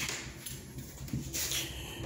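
A wooden French door with glass panes being handled: one sharp click, then faint rustling and scraping as the door is moved.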